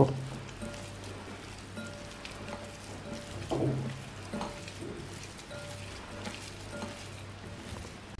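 Hand squeezing and kneading a wet mixture of fish, mashed potato and raw egg in a glass bowl, a soft crackly squishing, over a steady low hum. There is a brief louder sound a little after three and a half seconds.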